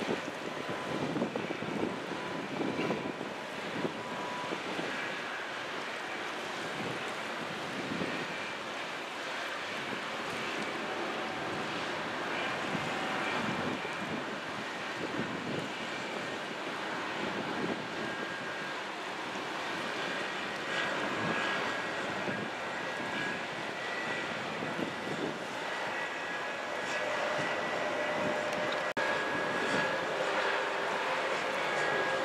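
Steady drone of large container ships' engines and machinery carried across the river, with faint steady whining tones over it and irregular gusts of wind on the microphone.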